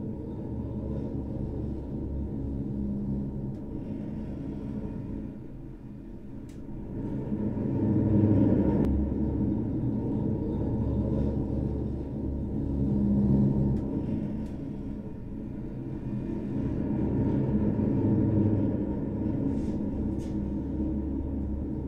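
A low, droning music track of sustained tones, swelling and fading in loudness several times, its volume raised and lowered by the conductor's arm gestures through a sensor glove.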